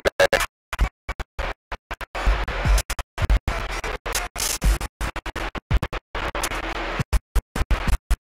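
Garbled, noisy CB radio audio chopping in and out many times a second, with short low thumps among the dropouts.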